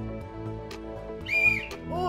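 A whistle blown once in a short, shrill blast of about half a second, starting a little over a second in: a contestant buzzing in to answer. Background music plays underneath.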